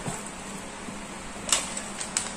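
Handling noise from a padded divider being slid into the foil-lined compartment of an insulated polyester delivery bag: faint rustling with one sharp click or crinkle about one and a half seconds in.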